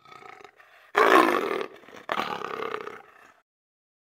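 Two long roaring animal calls, the first about a second in and the louder, the second about two seconds in, with a fainter sound just before them.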